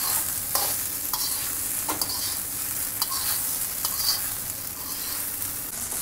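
Vegetable fried rice sizzling in a hot wok while a spatula tosses and stirs it. Steady frying hiss, with a scrape or knock of the spatula against the wok every half second to a second.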